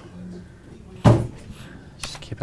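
A single loud thump about a second in, dying away quickly.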